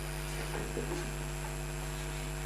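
Steady electrical mains hum, a low buzz with a thin high whine above it, with a few faint soft sounds under it about half a second in.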